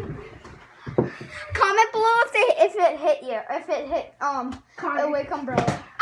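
Children's voices shouting and talking over each other during rough play, with a couple of short knocks in the first second.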